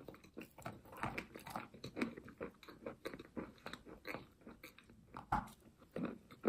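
Chalk coated in clay paste being bitten and chewed: an irregular run of dry crunches, several a second.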